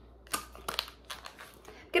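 Thin plastic clamshell packaging crinkling and clicking as it is handled, a few short crackles.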